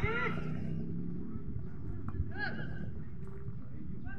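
Open-air football-match ambience: a loud shout trails off at the start, and a fainter, distant shout comes about two and a half seconds in, over a steady low rumble.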